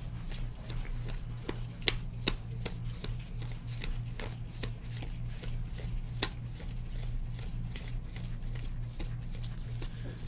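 Basketball trading cards being flipped through by hand one after another, each card giving a short, sharp flick, irregularly a few times a second, over a steady low hum.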